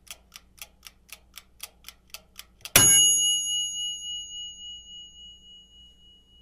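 Countdown timer sound effect: a clock ticking about four times a second, then a single bell ding about three seconds in that rings on and slowly fades, marking that the time is up.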